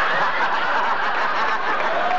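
Studio audience laughing, a steady crowd of many voices with no single voice standing out.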